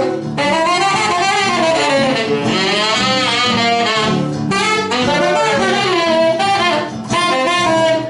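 Tenor saxophone playing a swing jazz solo, with guitar and bass accompaniment. The melodic line bends and wavers between phrases, with short breaths just after the start and about seven seconds in.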